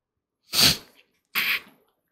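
Two short, sharp bursts of breath from a man close to the microphone, about a second apart, the first the louder.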